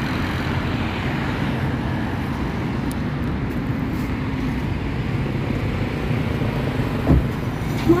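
Road traffic: a steady low rumble of passing vehicles, with one brief low thump about seven seconds in.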